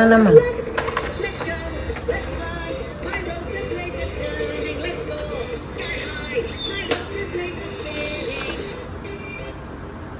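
A battery-powered talking toy playing its electronic voice and tune, fading out near the end, with a few sharp clicks of plastic toys being handled.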